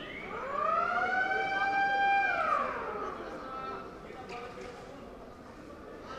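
A siren-like wailing tone rises over about a second, holds steady for about a second and a half, then falls away.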